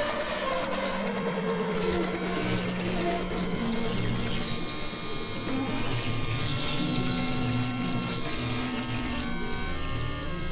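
Experimental electronic synthesizer music: layered held drone tones over a noisy, gritty texture. A strong low note drops to a lower pitch about four seconds in.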